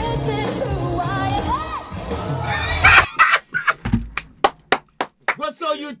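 A woman sings a pop song with band accompaniment in a live performance recording. About halfway through the music breaks off with a loud burst of crowd shouting, then a run of sharp hits, and a voice starts near the end.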